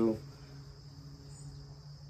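A steady, faint high-pitched insect trill, like crickets, in an outdoor summer yard, with a faint low steady hum beneath it.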